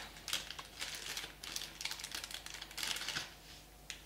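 Plastic and cardboard packaging handled close to the microphone: irregular rustling and crinkling with small clicks as the next toy figure is unpacked.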